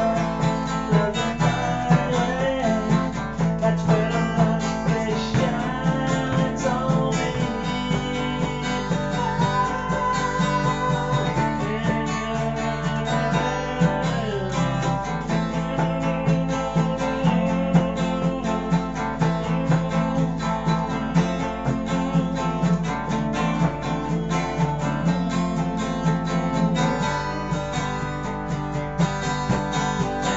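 Acoustic guitar played solo, a continuous run of chords and picked notes with no words.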